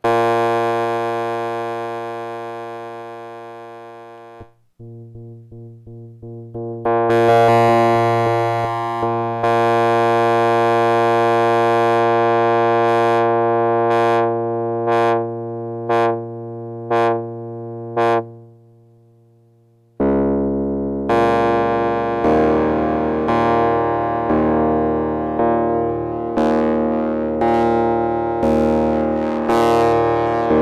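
Ensoniq ASR-10 sampler playing waveform B21, a resonant, velocity-sensitive saw-style waveform, on its keyboard. A held chord fades away and a few soft notes follow. Then comes a swelling held chord and a string of short stabs, and from about two-thirds of the way in, chords are struck about once a second.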